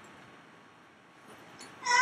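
A quiet room, then near the end a young woman's voice breaks in with a high-pitched, drawn-out vocal sound that slides down in pitch.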